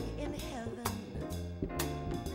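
Live jazz band playing, with sharp drum-kit hits about once a second over bass and saxophones.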